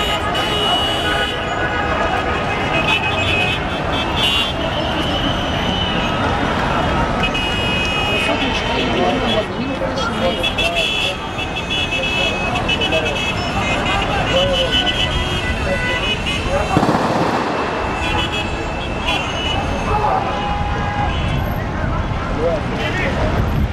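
Busy street noise: many voices, traffic running, and car horns sounding in short repeated toots. There is a louder surge of noise about seventeen seconds in.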